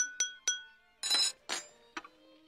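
A metal spoon tapped against a wine glass, giving a few quick, ringing clinks to call the table to attention for a toast. About a second in come two short, noisier sounds.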